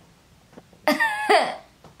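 A person's voice in two short, loud bursts about a second in, each with a sharp onset and a falling tail, like a cough or a burst of laughter.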